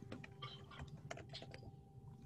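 Faint typing on a computer keyboard: quick, irregular key clicks over a steady low hum.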